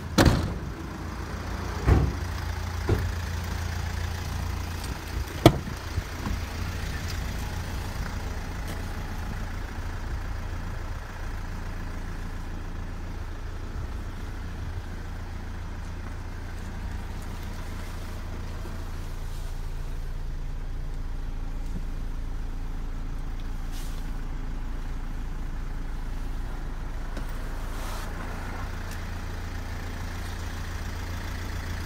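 A van door shutting with a loud bang, then a few lighter knocks over the next five seconds, over a steady low rumble.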